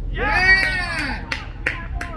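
A loud, drawn-out shout from a fielder as the batter is dismissed, rising and falling in pitch, followed by a few sharp hand claps.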